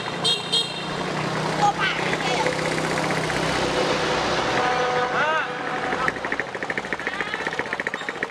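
A motor vehicle passing on the road, with two short horn toots at the start; its noise swells over a few seconds and fades about six seconds in.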